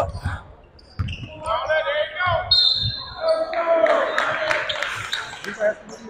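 Basketball being dribbled on a hardwood gym floor, the bounces repeating as low thumps, with voices and crowd noise carrying through the gym. A brief high steady tone sounds about two and a half seconds in.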